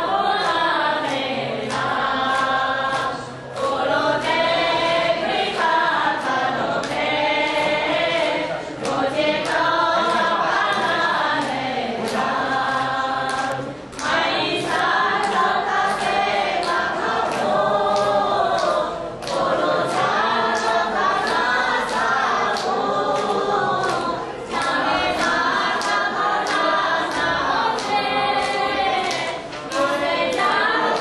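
A group of Vaishnava devotees chanting together in sung phrases of about five seconds with short gaps between. Evenly spaced sharp strikes sound about twice a second.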